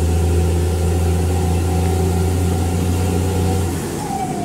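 A road vehicle's engine and road noise while driving at a steady speed: a steady low drone that drops away just before the end.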